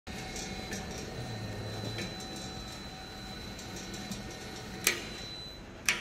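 Tapioca-pearl making machine running, its motor-driven paddle churning a thick starchy mixture in a stainless-steel bowl with a steady mechanical hum and a faint high steady whine. Two sharp knocks near the end, about a second apart.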